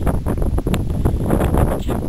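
Wind buffeting the camera's microphone: a loud, gusting low rumble, with a single faint click about three-quarters of a second in.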